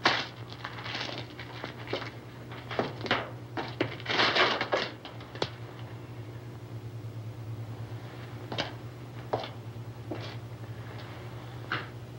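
A person moving about a small room: a scattering of short, soft knocks, scuffs and rustles, about ten in all, with a slightly longer rustle about four seconds in. Under them runs the steady low hum of the old film soundtrack.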